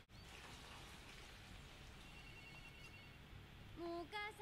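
Near silence from a film soundtrack: a faint steady hiss, with a faint high beeping pattern about halfway through. A woman's voice starts just before the end.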